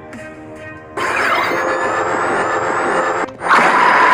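Background music, then about a second in a loud, sudden transformation sound effect starts: a sustained noisy rush with a steady tone and faint rising whistles. It cuts out briefly, then returns louder with a strong steady high tone.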